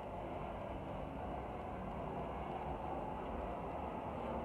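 Steady low background rush with no distinct events: room tone.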